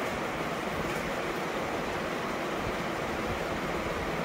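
A steady, even hiss and rumble of background noise, with no distinct knocks or voices.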